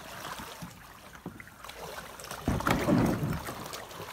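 Plastic sit-on-top kayak coming in to a stony river bank: light paddle splashes and drips, then a louder, rough scrape and bump of the hull grounding on the rocks about two and a half seconds in.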